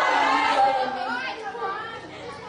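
Several voices chattering at once, loudest in the first second and fading toward the end.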